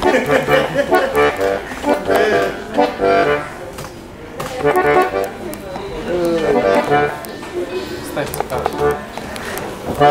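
Bayan, a Russian button accordion, playing chords and a melody, with a voice over it; the playing dips quieter about four seconds in.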